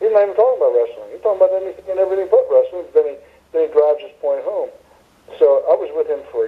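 Speech only: a man talking steadily, with a thin, phone-like sound.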